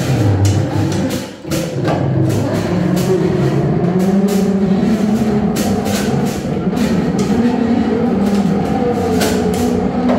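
Free improvised electronic music: wavering, sustained drones from a modular synthesizer, with scattered irregular clicks and taps from a drum kit and small percussion.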